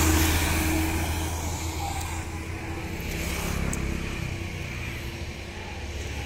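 A large bus's engine running as it passes close by, its low rumble loudest at the start and fading away over the next few seconds into a quieter background of road traffic.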